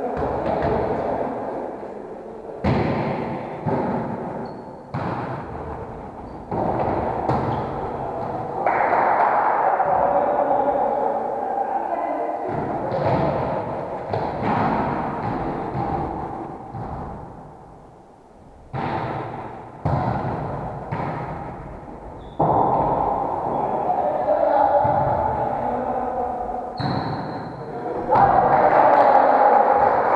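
Volleyball being struck and bouncing in a large echoing sports hall: several sudden thuds at irregular intervals, each ringing on in the hall's reverberation, with indistinct voices between them.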